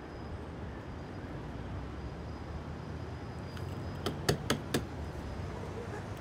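Steady low background ambience with a low hum, broken by a quick run of four or five short clicks or knocks about two-thirds of the way through.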